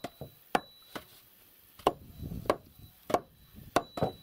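Hatchet chopping into the edge of a wooden board: about seven sharp blows, a little over half a second apart.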